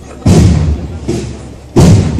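Slow, heavy drum beats from a cornet-and-drum band, two strokes about a second and a half apart, each ringing out briefly, with crowd murmur between them.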